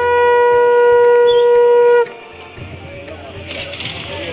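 A conch shell (shankha) blown in one long, steady, loud note that cuts off abruptly about two seconds in, leaving quieter background noise.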